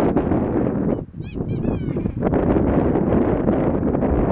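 Wind buffeting the microphone, a steady rough rush. It is broken about a second in by a brief, high-pitched, wavering call.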